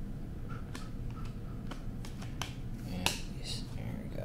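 Trading cards being sorted by hand: light clicks and taps of card edges flicking and cards being set down on stacks, with one sharper click about three seconds in, over a low steady room hum.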